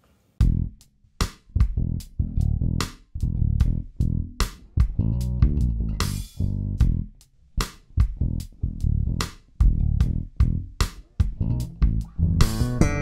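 MTD 534 five-string electric bass played solo: a busy run of plucked notes with sharp, bright attacks and a deep low end, starting about half a second in.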